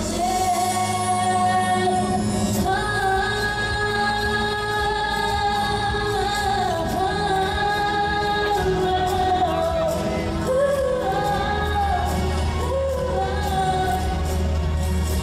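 A woman singing a pop song live into a handheld microphone with a steady bass and light percussion behind her, amplified through PA speakers, holding long notes.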